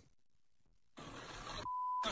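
About a second of near silence, then the hissy background sound of a video clip starting, cut short near the end by a brief steady beep with the clip's sound dropped out beneath it.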